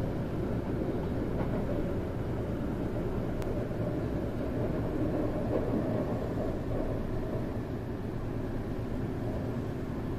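Steady running noise inside the cabin of a Kintetsu Aoniyoshi limited express train moving slowly, a low even rumble. One faint click about three and a half seconds in.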